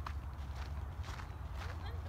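Footsteps on grass and dry soil, about two steps a second, over a steady low wind rumble on the microphone.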